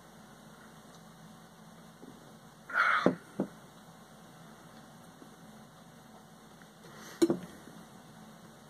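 Handling sounds in a quiet room after a sip of beer: about three seconds in, a short breathy noise and then a light click as the glass is set down; about seven seconds in, a knock as the beer can is handled.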